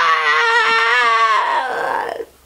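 A high voice holding one long drawn-out cry at a steady pitch, fading away near the end, ending a run of excited "¡Estoy lista!" shouts.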